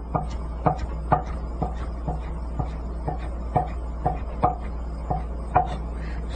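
Chef's knife striking a wooden cutting board in an even rhythm, about two cuts a second, as soaked rock tripe mushroom is cut into thin strips. A low steady hum lies underneath.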